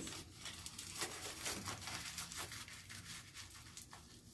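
Aluminium foil crinkling as it is folded and pressed around a section of hair, a run of faint, irregular crackles that thins out toward the end.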